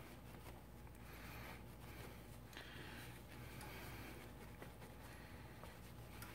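Faint soft rubbing of a cloth wiping a surface in a few short strokes, against near-silent room tone.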